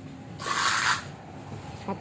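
A short hissing rustle, about half a second long, starting about half a second in.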